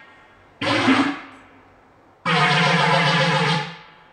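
Korg pad synthesizer notes played by touch: one note about half a second in that fades away over a second, then a longer held note from about two seconds in that fades out near the end.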